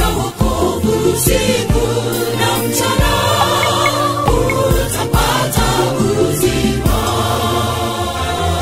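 A women's gospel vocal group singing in harmony over backing music with a steady drum beat.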